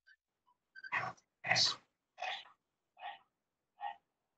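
An animal's short calls, six in a row about two-thirds of a second apart, the first two loudest and the rest growing fainter.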